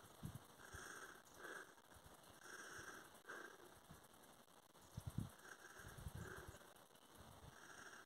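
Near silence: faint outdoor ambience, with a few soft low thumps about five seconds in.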